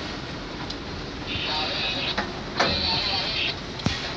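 Steel tool scraped twice across the rim of a steel slump cone, striking off the excess fresh concrete to level the top, with a few sharp metal knocks between and after the strokes.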